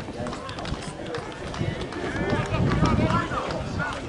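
Men's voices shouting and calling across a rugby field, louder and more crowded from about two seconds in.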